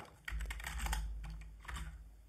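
Computer keyboard typing: a quick run of keystrokes as a terminal command is typed out, over a faint low hum.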